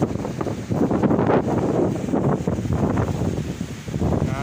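Wind buffeting the microphone in gusts over choppy sea surf.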